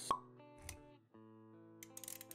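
Intro jingle of held synth-like notes with animation sound effects: a sharp pop just after the start, the loudest moment, then a softer low thump. The music drops out briefly near the middle, comes back with held notes, and a few quick clicks come near the end.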